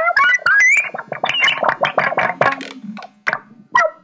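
Rapid, chirping electronic synthesizer blips with quick pitch glides, thinning out near the end.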